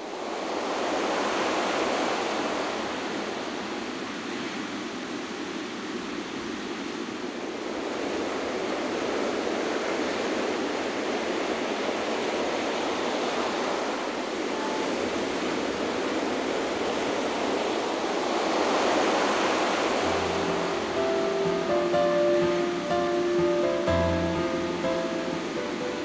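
Ocean surf: waves washing in, swelling and ebbing slowly. About twenty seconds in, soft music with a few held notes and low bass notes comes in over it.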